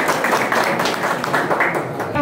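A small group of people clapping, quick and irregular.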